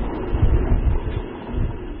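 Launch noise of an Agni-III missile's solid-fuel rocket motor: a steady, rough rushing rumble, heaviest in the low end, swelling about half a second in.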